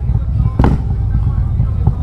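Harley-Davidson Road Glide's Stage II V-twin with 4-inch slip-on exhausts running at low revs as the bike rolls slowly, a steady low rumble. A single short click comes about half a second in.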